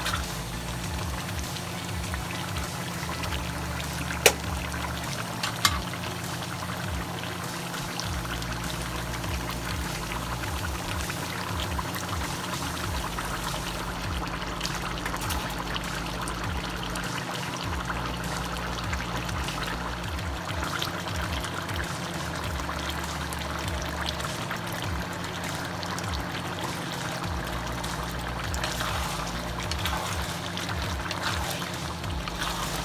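Chicken simmering in sauce in a wok, a steady bubbling sizzle, with two sharp knocks a few seconds in, over background music with a steady bass.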